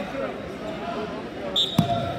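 Gym crowd voices and shouting, then near the end a single loud slap: a wrestling referee's hand striking the mat to signal a pin.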